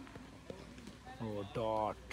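A voice calls out in a drawn-out shout during the second half, over open-air background quiet; a faint knock comes about half a second in.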